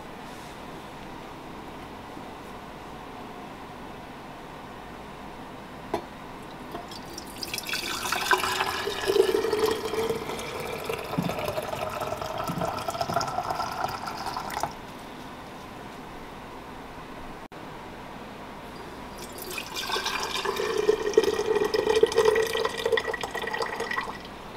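Sassafras tea poured from a glass bowl through a stainless steel funnel into a glass mason jar: a stream of liquid filling the jar, its pitch creeping up as the jar fills. Two pours: the first runs for about seven seconds from near the middle and stops abruptly, and the second starts a few seconds later and runs on.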